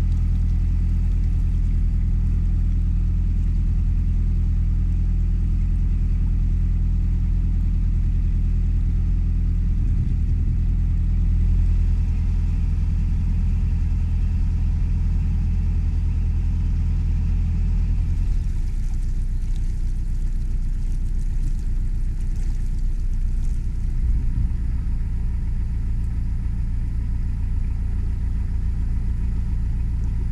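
A narrowboat's diesel engine running steadily at cruising speed, a deep, even engine note. About two-thirds of the way in the note turns rougher and less even.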